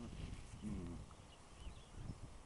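A tiger cub play-wrestling on grass gives one short, low moaning call a little over half a second in, amid low scuffling and thumps of bodies on the ground.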